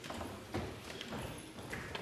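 Scattered knocks and footsteps of people moving about a large chamber, with a faint murmur of voices in the background.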